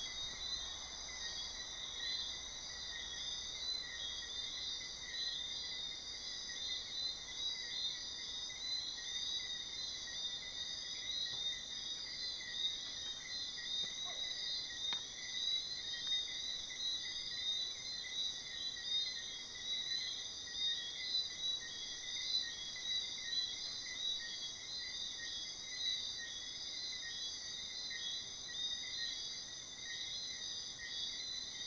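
Steady night-time chorus of crickets and other insects: dense, finely pulsing trilling layered at several high pitches, unbroken throughout.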